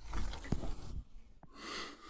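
A person breathing close to the microphone, with a breathy exhale near the end and a couple of light handling clicks.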